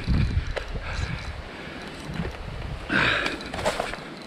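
Wind rumbling on the microphone, with handling and rustling noise and a few sharp ticks. A short, louder noisy burst comes about three seconds in.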